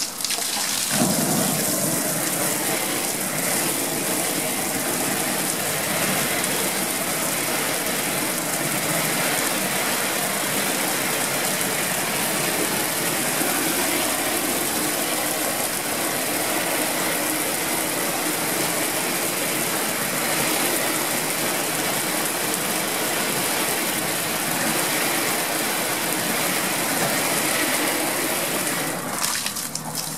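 Garden hose spraying a steady stream of water onto a vinyl projection screen. The spray starts about a second in and stops shortly before the end.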